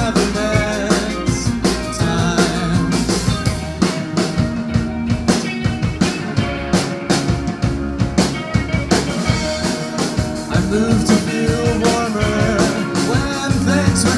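Rock band playing live: electric guitars over a Pearl drum kit keeping a steady beat, with a singer's voice at the microphone.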